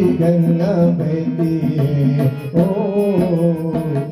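Harmonium playing the bhajan's melody in an instrumental passage between sung lines, with sustained notes moving in pitch over a fast, light ticking rhythm.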